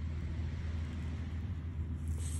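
Steady low ambient rumble with no distinct event.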